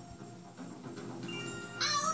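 Cartoon soundtrack playing from a TV: soft background music with a few held notes. Near the end comes a high-pitched vocal sound that slides up and down in pitch.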